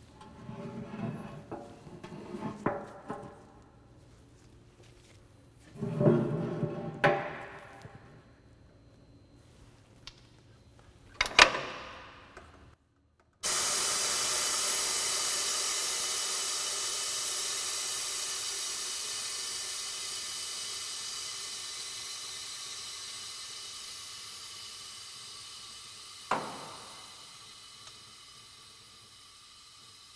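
Handling clunks and a sharp knock as the suspension tools are set under the tire, then a steady hiss of compressed air from a pneumatic air jack that starts suddenly and slowly fades over about fifteen seconds, with a single click near the end.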